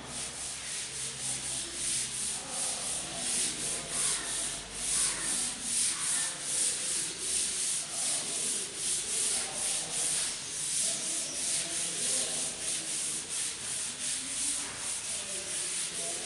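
Chalkboard duster scrubbing across a chalkboard in rapid back-and-forth strokes, a rhythmic rubbing hiss as the chalk writing is erased.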